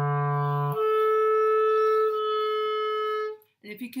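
Clarinet holding low E, then jumping up a twelfth to the B about a second in as the register key is flicked. The B is held, its tone changing slightly partway, and stops shortly before the end. This is an overtone exercise, with the B sounding on the low-E fingering.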